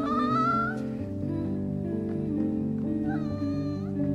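A cat meowing twice over steady background music: a rising meow in the first second and a second, level meow near the end.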